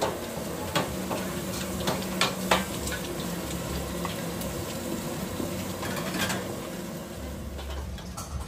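Fried rice sizzling in a wok over a gas burner while a metal ladle scrapes and clanks against the wok as the rice is stirred and tossed. The sizzle runs steadily under a few sharp ladle clanks, the loudest about two and a half seconds in.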